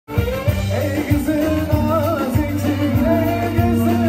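Live band playing Turkish oyun havası dance music: a steady thumping low beat under a wavering, ornamented lead melody.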